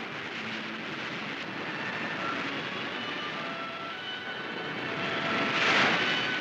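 Surf washing over and breaking on coastal rocks: a steady rushing that swells into a louder surge near the end.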